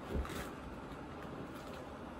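Faint rustling of an oversized fleece hooded blanket as the wearer moves his arms in it, with a soft low thump just after the start, over steady low room noise.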